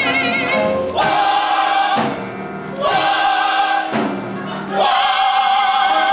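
Musical-theatre ensemble singing in chorus, holding sustained notes with vibrato; the chorus swells in on new phrases about one, three and five seconds in, with brief quieter stretches between.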